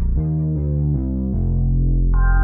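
Electronic beat playback led by a heavy distorted synth bass that steps through about four notes in quick succession.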